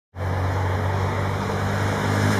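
A motorcycle engine running at a steady speed: a low, even drone with a hiss of wind and road noise over it.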